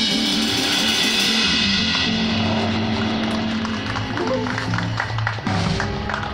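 A live band with a drum kit, electric guitar and bass playing. The cymbal wash fades out about two seconds in while low bass and guitar notes carry on, with lighter strokes after.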